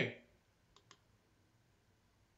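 Two faint clicks in quick succession, about three-quarters of a second in, from a computer mouse being clicked.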